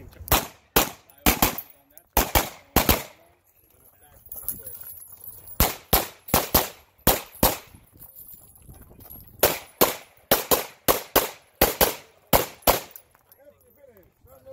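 Semi-automatic pistol fired in rapid strings of shots, mostly in quick pairs (double taps), in three bursts about two seconds apart as the shooter moves between target arrays.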